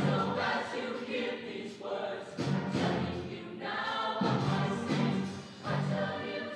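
A mixed show choir singing in harmony with instrumental accompaniment, in short phrases.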